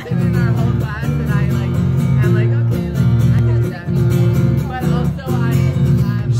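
Acoustic guitar strummed live, chords played in a steady strumming rhythm.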